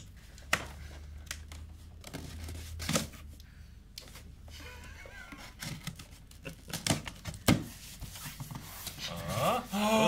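Cardboard shipping box being opened by hand: packing tape picked at and torn, cardboard rustling, with a few scattered knocks against the box.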